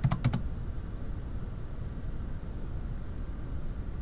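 A few quick keystrokes on a computer keyboard at the start, then a steady low background hum.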